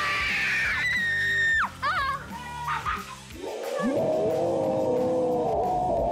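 A child's long, high scream as a water balloon bursts on the trampoline, falling slightly in pitch, then a shorter cry and a lower drawn-out wail in the second half, over background music.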